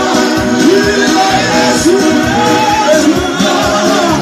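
A live gospel song: voices singing through microphones over keyboard music with a steady beat, played through a PA.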